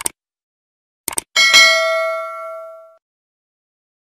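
Subscribe-button sound effect: a mouse click at the start and a quick double click about a second in, then a notification bell dings once and rings out, fading over about a second and a half.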